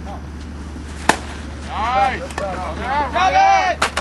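A baseball bat hitting a pitched ball: one sharp crack about a second in, sending up a fly ball. Players then shout loudly as it goes up.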